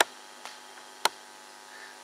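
Quiet pause filled by a steady electrical mains hum through the microphone's sound system, broken by two sharp clicks, one at the start and one about a second in.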